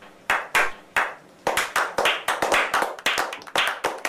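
Several people clapping hands: single slow claps at first, quickening from about a second and a half in into faster, denser clapping.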